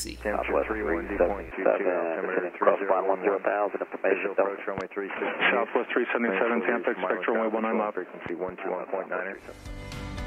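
Aircraft radio voice transmissions, ATIS and ATC, played through the cockpit audio panel: thin, narrow-band radio voices talking almost without pause until they stop about nine seconds in. They demonstrate the audio panel's 3D audio, which places COM-1 and COM-2 in separate directions.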